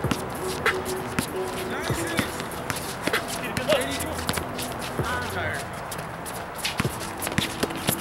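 Outdoor pickup basketball game on a concrete court: irregular sharp knocks of the ball bouncing and players' running footsteps and shoe scuffs, with scattered distant calls from the players.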